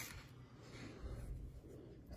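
A single sharp click at the start, then faint rubbing and handling noise from a brass deadbolt latch being worked in the hands.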